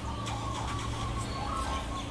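Steady low background hum with a few faint, brief high-pitched chirps over it.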